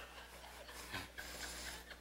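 Faint room tone: a low steady hum with a few soft, short sounds scattered through it.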